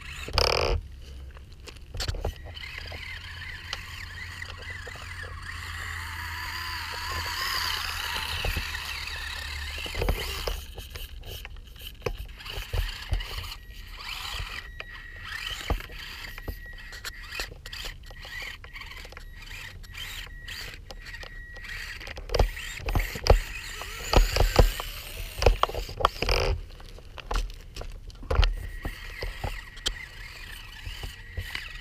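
Losi Micro 1:24 rock crawler's small electric motor and gear train whining as it crawls, the pitch wavering up and down with the throttle. Later come scattered clicks and knocks from the tyres and chassis against the rocks, with a cluster of louder knocks in the last third.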